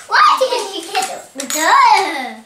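A young child's voice, excited and high-pitched, speaking and exclaiming, with a rising-and-falling call in the second half.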